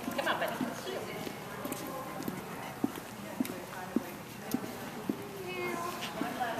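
Hall ambience of distant voices, with a run of sharp taps about every half second in the second half.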